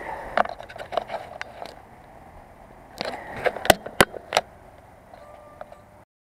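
Mountain bike rolling slowly over a dirt track, its frame and drivetrain rattling with scattered clicks, and two sharp loud knocks close together about four seconds in.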